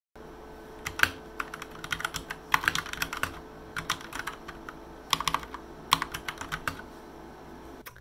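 Typing on a computer keyboard: irregular flurries of key clicks, with short pauses between them, over a faint steady hum.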